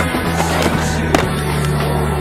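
Skateboard grinding along a concrete ledge, then a sharp clack a little over a second in as the board lands and rolls away, over a music soundtrack.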